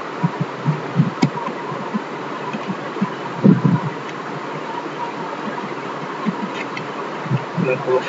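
Steady buzzing hiss from the recording's microphone, with a few short clicks from computer keyboard and mouse use and a couple of brief low murmurs about three and a half seconds in.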